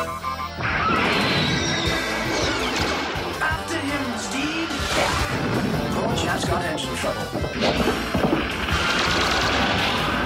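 Cartoon action soundtrack: music under repeated crash and explosion sound effects.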